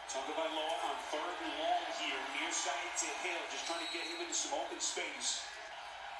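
Television football broadcast playing at low level: a play-by-play announcer talking over the game.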